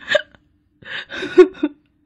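An elderly woman's voice sobbing in short, catching gasps: one brief cry at the start, then a run of hiccuping sobs about a second in. It is a cry of shock and distress.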